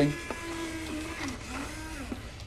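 Small electric motors of a remote-controlled model Dalek whirring as it is driven about, a thin whine that dips and rises in pitch a few times as the motors change speed.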